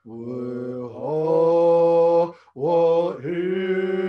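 A man singing an unaccompanied chant-like song in long held notes, the pitch stepping up about a second in, with a short breath break about two and a half seconds in.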